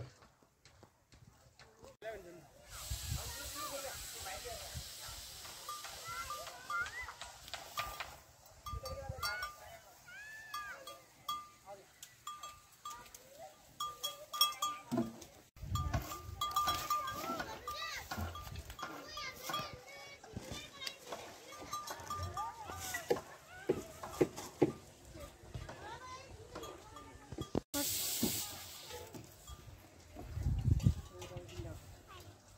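Goats bleating, with a small bell clinking over and over, among people's voices.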